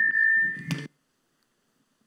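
A loud, steady high-pitched ring like microphone feedback through a lecture-hall sound system. It stops abruptly a little under a second in.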